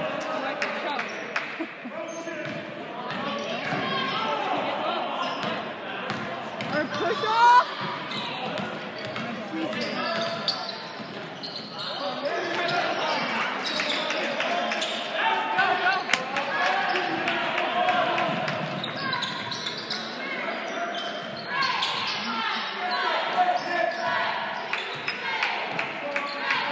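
Basketball dribbled on a hardwood gym floor during a game, the bounces echoing in the hall over the steady voices of players and spectators. A brief loud sound stands out about seven and a half seconds in.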